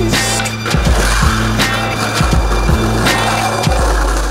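Skateboard wheels rolling on a concrete sidewalk, a continuous rough rolling noise, with a music track playing over it.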